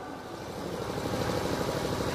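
A steady engine-like rumble with a fine rapid flutter, slowly growing louder.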